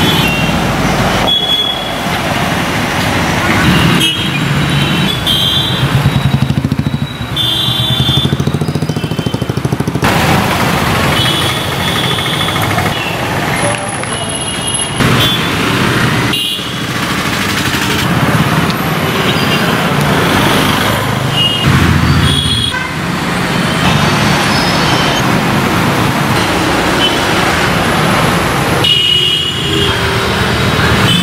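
City street traffic: motorcycles and cars passing with their engines running, and short horn toots now and then. The sound shifts abruptly several times.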